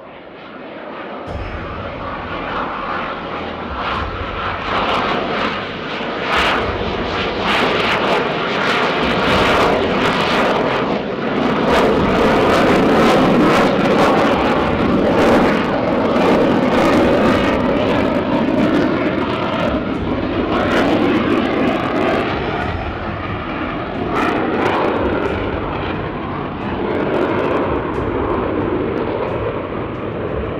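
Twin General Electric F404 turbofans of a Spanish Air Force F/A-18 Hornet running at high power as the jet climbs nose-high. The jet roar, with a crackle in it, builds over the first dozen seconds, is loudest around the middle, and eases off toward the end.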